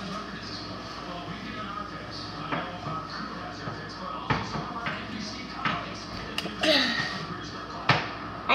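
Magnetic slime being stretched and worked in the hands, with a few sharp clicks and knocks, over faint background voices and music.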